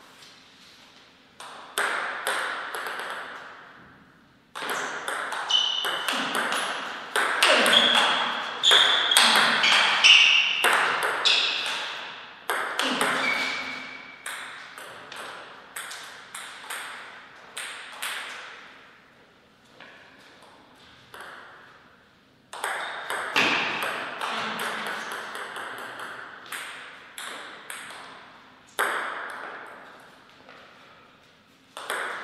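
Table tennis rallies: the plastic ball clicking sharply off the paddles and the table in quick succession, each hit ringing briefly in the hall. There are two long exchanges, one from early on to about 14 seconds in and another from about 22 seconds, with a lull between them.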